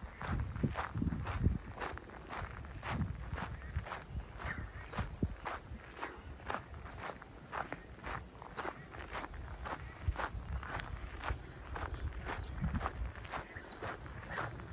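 Footsteps on a gravel path at a steady walking pace, about two steps a second.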